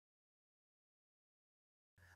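Near silence: the sound track is blank, with no engine or road sound.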